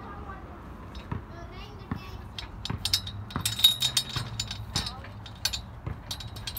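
Rusty steel chains of playground climbing equipment rattling and clinking against each other and a metal pole, a quick run of sharp metallic clinks starting about two seconds in.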